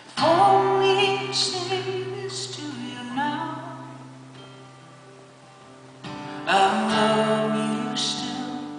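Live solo acoustic guitar with a man singing held, wordless notes over it. A loud chord and a note that slides up come in about a quarter second in and fade away over the next few seconds, then a new chord and held note start about six and a half seconds in.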